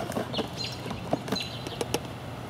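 A bird calling in the background: short, high notes repeated several times. Light clicks come from a plastic sprayer jar and bottle being handled.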